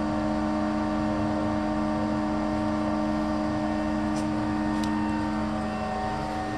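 Tractor engine idling steadily, a constant droning hum with a faint regular pulse beneath it. Two faint clicks come near the end.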